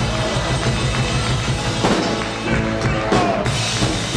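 Live rock and roll band playing: drum kit, electric guitars and bass, with drum hits standing out.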